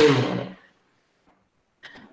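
A man's voice trailing off at the end of a sentence, then near silence with a faint breath or small noise just before he speaks again.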